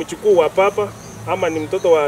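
A man's voice speaking Swahili, with a faint, high, repeated insect chirping in the background.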